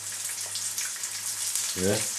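Fish fingers frying in oil in a pan, a steady fine crackling sizzle.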